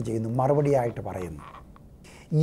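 A man's low voice drawing out a single vowel for about a second, pitch rising then falling, then trailing off into quiet.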